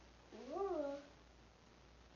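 A person's short voiced sound, about two-thirds of a second long, that slides up and then down in pitch.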